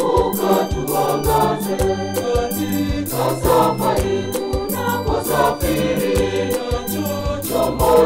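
Church choir singing a hymn in harmony over a steady beat of about three hits a second and a stepping bass line.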